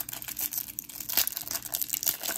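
Plastic wrapper of a Panini Prizm football hanger pack crinkling in irregular crackles as it is handled and torn open.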